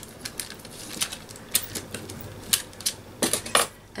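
A hand brayer rolled over a paper tag and then set down on the craft table: a scatter of light, irregular clicks and taps, with a cluster of them near the end.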